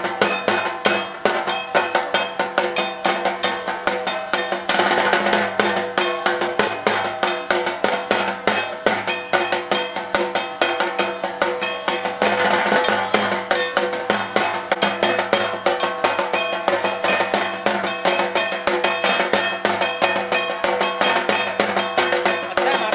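Fast, drum-led dance music at about four beats a second, over sustained held tones. It accompanies a dance with smoking clay incense pots.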